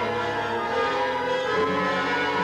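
Background music of sustained chords with many steady notes held together; the notes shift about one and a half seconds in.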